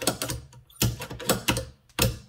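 Bolt of a 22 LR rimfire benchrest rifle action being worked by hand, a series of sharp metallic clicks and slides as it opens and closes. Its closing cam and lug timing have just been blueprinted, and it cycles smooth as butter.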